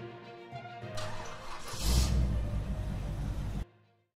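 Music, then a car engine starting: a rush of noise about a second in, then the engine catches and runs with a low rumble. Everything cuts off suddenly just before the end.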